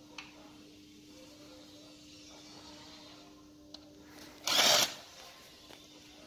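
A short half-second burst from a cordless DeWalt power tool run on the cylinder head of a bare Audi 2.0 TDI engine, about four and a half seconds in. Light metallic clicks come between, over a faint steady hum.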